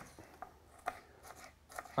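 Kitchen knife finely dicing an onion on a wooden chopping board: short crisp cuts about twice a second.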